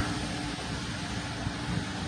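Steady background hiss with a faint low hum, the sound of ventilation running in the room.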